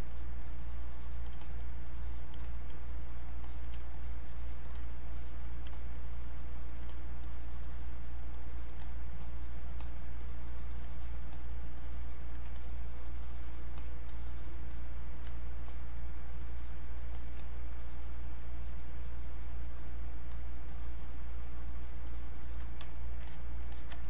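Faint, irregular scratching strokes and light clicks of a stylus on a drawing tablet while sculpting, over a steady low electrical hum that is the loudest thing throughout.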